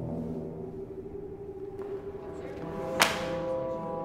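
Sustained, tense film-score tones, with a short rising swoosh into a single sharp hit about three seconds in, which rings out and fades.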